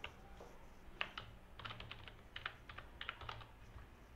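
Computer keyboard typing, faint: a few single key taps in the first second, then quick runs of keystrokes as a word is typed.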